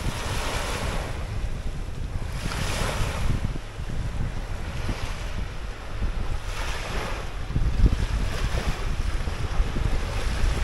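Small lake waves breaking and washing up a sandy, rocky shore, swelling in a hissing wash every few seconds. Wind buffets the microphone in a steady low rumble.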